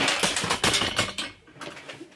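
A loud clatter of things knocking together and falling, lasting just over a second, then trailing off into a few quieter knocks and rustles.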